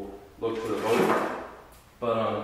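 Hard plastic scraping and sliding as a Humminbird fish finder head unit is slid off its removable quick-release mount, one rough slide starting about half a second in and lasting about a second.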